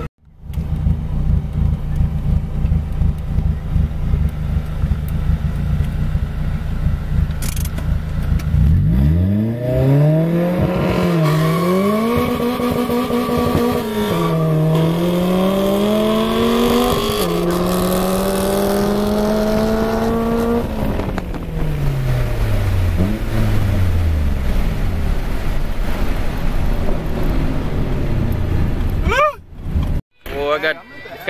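Turbocharged Honda Prelude four-cylinder engine, heard from inside the cabin. It idles with a low rumble, then about nine seconds in the revs climb hard and the car accelerates through three gear changes, each a sharp dip in pitch before the next climb. After that the driver lifts off, the revs fall away gradually, and the engine settles back to a rumble.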